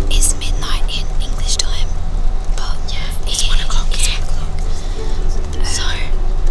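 Whispering over the steady low drone of a coach's engine and tyres on the road, heard from inside the passenger cabin.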